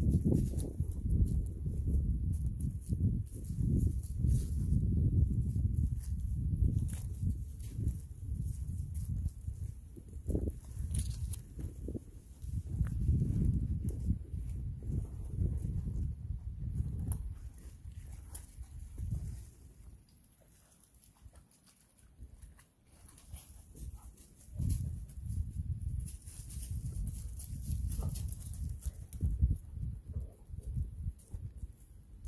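Footsteps over stone slabs and dry leaves: scattered short crunches and scuffs over a low, uneven rumble that fades for a few seconds about two-thirds of the way through.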